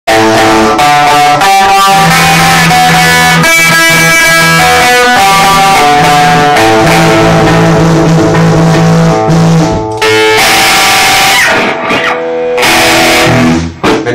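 Rock band playing an instrumental passage: electric guitars, bass guitar and drum kit, very loud, with brief breaks about ten and twelve seconds in.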